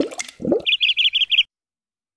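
Cartoon logo sound effect: two short rising swoops, then a quick, even run of about seven short high chirps that stops about a second and a half in.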